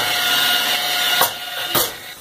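Rotary polisher running at low speed, its pad buffing the soft plastic control panel of an electric stove: a steady motor whine over a rubbing hiss. About halfway through the sound drops, with a couple of brief scuffs.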